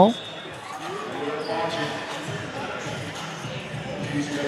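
Basketball game ambience in a large sports hall: a steady murmur of spectators' and players' voices, with a basketball bouncing on the wooden court during the stoppage before a free throw.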